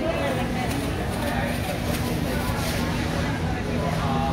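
Supermarket background sound: other shoppers' voices murmuring, over a steady low hum with a few faint clicks.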